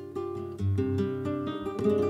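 Flamenco acoustic guitar playing a melodic passage of single plucked notes, with a louder strummed chord near the end.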